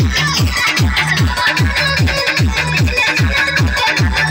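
Loud electronic dance music with a fast, deep kick drum, each hit dropping in pitch, about four beats a second.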